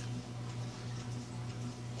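A steady low hum with a faint, regular ticking over it.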